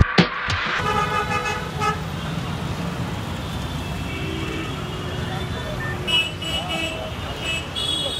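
Road traffic at a busy city crossing: engines running, with car and auto-rickshaw horns honking, one horn about a second in and several short honks near the end. A music beat cuts off just before the traffic sound begins.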